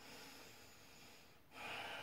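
A person breathing slowly through the nose while holding a kneeling stretch: a faint breath, then a louder, longer one starting about one and a half seconds in.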